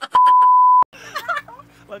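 A single loud, steady beep at one pitch, lasting under a second and cut off sharply: the flat 1 kHz tone used as a censor bleep. Faint voices and laughter follow it.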